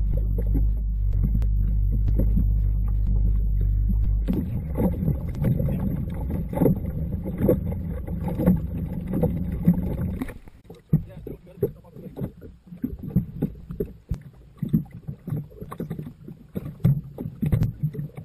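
A dive boat's engine runs with a steady low hum, changes about four seconds in and stops about ten seconds in. After that, irregular knocks and clatter from dive gear being handled on the deck, with some voices.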